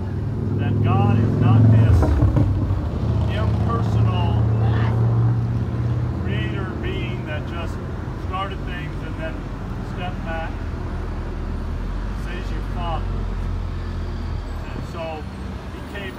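A motor vehicle engine runs nearby as a low rumble, loudest about two seconds in and slowly fading over the following seconds.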